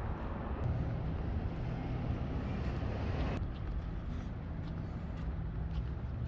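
Street ambience: a steady low rumble of road traffic with a faint engine hum. About three and a half seconds in, the sound abruptly thins and becomes duller.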